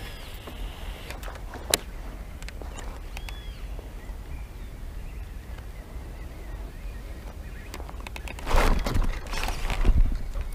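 Wind rumbling steadily on the microphone over open water, with a few faint bird chirps and one sharp click about two seconds in. Near the end comes a louder burst of rushing, splashy noise.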